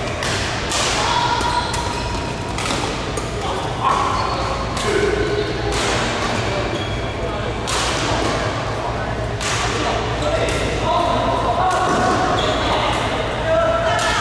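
Badminton rackets striking a shuttlecock in a doubles rally: sharp hits about every one to two seconds, ringing in a large hall.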